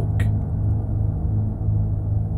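A steady low hum with a faint higher overtone, unchanging throughout, and a brief click just after the start.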